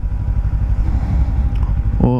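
Kawasaki Ninja 300's parallel-twin engine running while the motorcycle rides along a street, a steady low drone.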